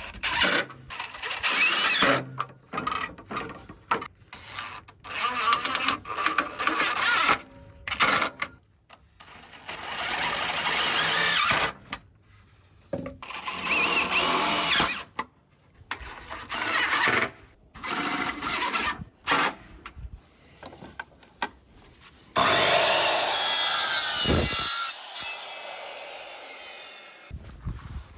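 Cordless DeWalt driver running in repeated short bursts of one to two seconds, driving screws through a perforated metal strap into a fibreglass press-composite rail, with brief pauses between screws.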